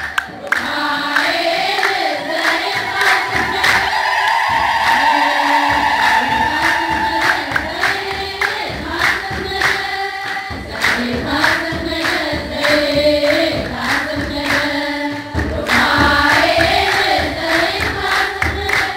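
A church choir singing an Ethiopian Orthodox Christmas hymn, with a regular beat of sharp strikes under the voices.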